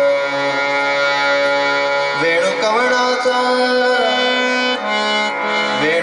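Male classical vocalist singing a Marathi gaulan (devotional song) over harmonium accompaniment: a long held note, then the voice bends through melodic turns from about two seconds in.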